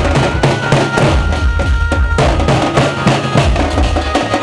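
Loud procession music driven by drums: fast, dense drum strikes over a heavy bass beat, with a faint steady high tone running through it.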